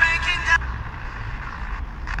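A Sony Ericsson phone's FM radio playing a voice from a station's broadcast, which cuts off about half a second in as the tuner steps up the band, leaving faint hiss between stations.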